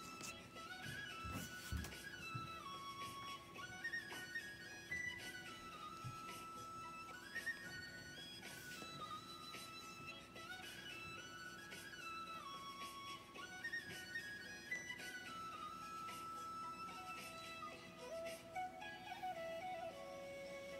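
Instrumental background music: a simple stepped melody with a short phrase that repeats every few seconds over a steady held low note.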